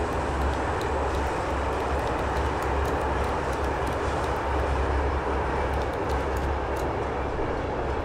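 Steady low rumble and hiss of a moving train carriage heard from inside, with occasional faint ticks.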